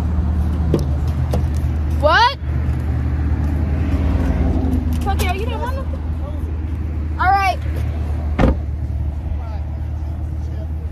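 Steady low drone of a car driving, heard from inside the cabin. Three short high-pitched squeals cut across it, one sweeping steeply upward about two seconds in, a wavering one around five seconds and a rising-and-falling one past seven seconds, and a single sharp click comes near the end.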